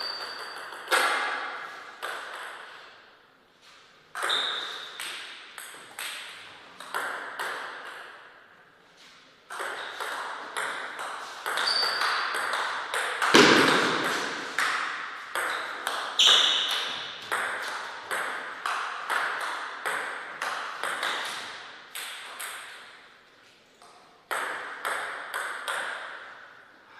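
Table tennis rallies: a celluloid ball clicking sharply off rubber-faced bats and the table in quick back-and-forth runs, several points with short pauses between them. One hard hit about halfway through is the loudest.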